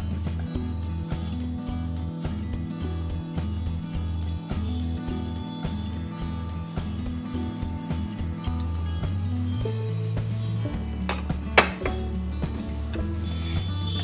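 Background music with a steady beat and bass line. A sharp clink or two stands out about eleven seconds in.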